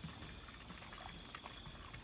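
Faint outdoor background: a steady low hiss with a thin, steady high-pitched tone and a few small scattered ticks.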